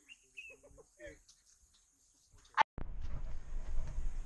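Near quiet with a few faint voices, then a sharp click about two and a half seconds in, followed by steady low rumbling handling noise from a hand-held camera's microphone.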